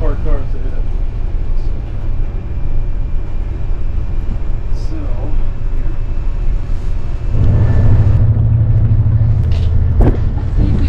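Steady low rumble and hum of a ship's engines and bridge equipment, with faint voices. About seven and a half seconds in, a louder low rushing sets in, like wind on the microphone.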